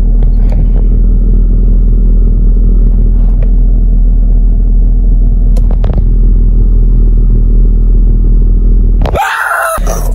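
Car engine idling, heard inside the cabin as a steady, loud low rumble, with a few light clicks and knocks. It breaks off abruptly shortly before the end.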